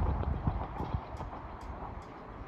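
Riblet fixed-grip double chairlift running, a low rumble with irregular clattering knocks from the moving chair and its line, loudest in the first second and easing off toward the end.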